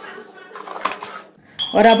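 A few light clinks and taps of kitchenware: a steel spoon resting in a ceramic mug and the lid of a small metal tin being handled, with a sharp click right at the start.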